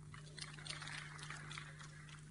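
A pause in speech: faint room tone with a steady low hum.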